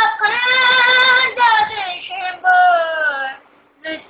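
A child singing unaccompanied in a high voice, holding long notes with a slight waver, in phrases broken by short breaths; the voice stops for about half a second near the end before going on.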